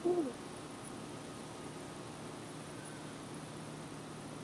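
A single soft spoken word at the start, then quiet outdoor background with a faint steady low hum and light hiss.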